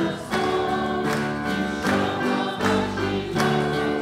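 A congregation singing a lively worship action song together, with instrumental accompaniment and a steady beat.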